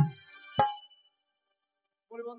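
The stage accompaniment ends on two accented strikes, at the start and just over half a second in. Each is a low hit with a bright ringing tone that fades out over about a second, and silence follows.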